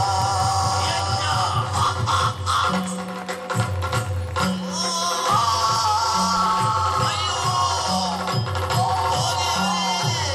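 Yakshagana accompaniment music: a voice singing over a steady drone, with a repeating drum pattern and jingling, clashing percussion.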